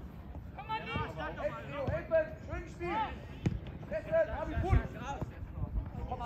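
Shouts and calls from young football players and sideline spectators during open play. Several sharp thuds of a football being kicked stand out, the loudest about three-quarters of the way through.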